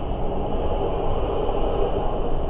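Steady low rumbling background noise of a small room, with no distinct event.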